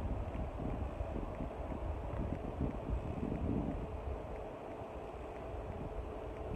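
Low rumbling background noise picked up by a phone's microphone, with a faint steady hum above it and no clear events.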